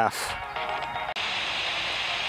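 Small portable FM radio receiving a homemade FM transmitter's signal, its audio faint at first. About a second in it switches abruptly to a steady static hiss, the sign of a weak signal.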